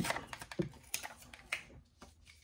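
Small cards and paper being handled on a table: a quick irregular run of light clicks and taps that thins out after about a second and a half.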